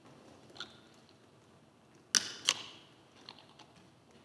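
Laptop keys being pressed: a faint click, then two sharp clicks about half a second apart near the middle and a few light ticks after, over quiet room tone.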